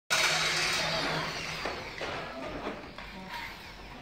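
Corded electric drill running for about a second and a half while fixing raised letters to a metal sign frame, then a few light knocks.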